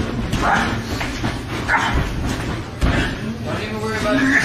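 Short, indistinct vocal cries with a few dull knocks while fighters grapple on a ring mat; no words can be made out.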